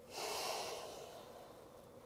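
One audible breath from the woman holding the pose: an unpitched rush of air that swells quickly and fades away over about a second.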